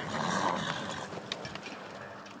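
A short, noisy animal sound in the first half second, without a clear pitch, followed by a few faint clicks.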